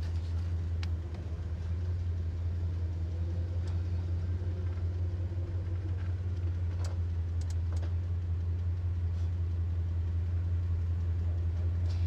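Steady low drone of a car's engine and road noise heard from inside the cabin while driving, with a few faint ticks.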